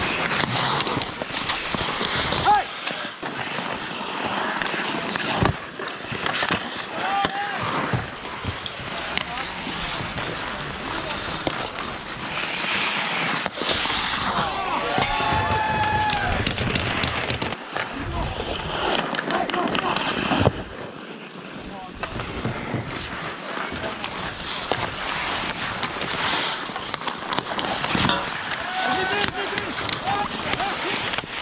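Hockey skates scraping and cutting across outdoor ice, with sharp clacks of sticks and puck, the loudest about 2.5, 5.5 and 20.5 seconds in. Players' shouts and calls rise over it now and then, one clearest about halfway through.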